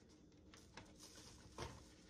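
Faint patter of dry fish breading seasoning pouring from a canister into a paper bag, with a couple of soft taps, the louder one near the end.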